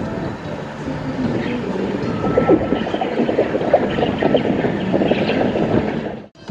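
Strong wind buffeting the microphone, turning rougher and crackly from about two seconds in, over the wash of wind-driven waves on the river.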